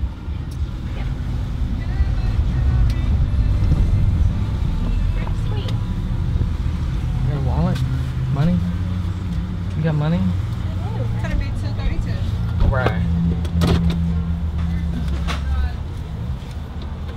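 Steady low engine rumble of a Jeep running, heard from inside the cabin, with faint, indistinct voices over it.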